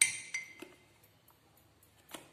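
A metal spoon clinks against the rim of a ceramic mug. One sharp ringing clink is followed within about half a second by two lighter taps.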